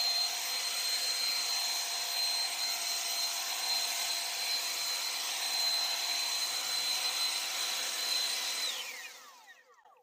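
AOETREE leaf blower running, a steady high whine over the rush of air as it blows leaves. Near the end the whine drops in pitch as the blower spins down and fades out.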